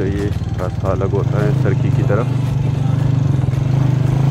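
Motorcycle engine running steadily while riding, a low drone that grows stronger about a second in, with a voice over it in the first half.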